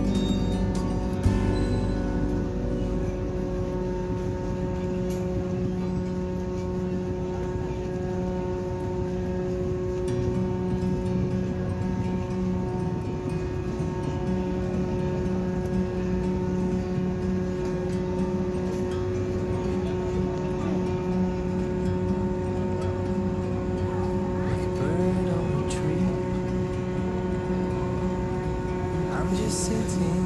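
A ship's engines running on board a ferry: a steady drone with several fixed tones over a low rumble that holds without change.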